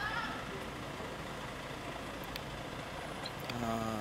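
Parked coach's engine idling, a steady low hum under faint outdoor voices.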